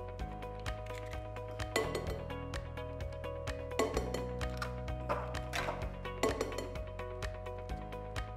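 Eggs cracked against a glass mixing bowl and broken open into it, several short cracks and clinks a second or two apart, over background music with a steady beat.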